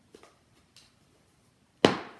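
Faint handling ticks, then a single sharp knock near the end as items are handled at the table.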